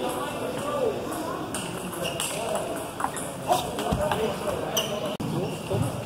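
Indistinct voices in a large, echoing hall, with a few sharp clicks of table-tennis balls bouncing on a table or striking paddles in the second half.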